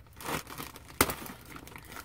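Packaging crinkling and rustling as a mailed package is handled and opened, with a sharp click about a second in.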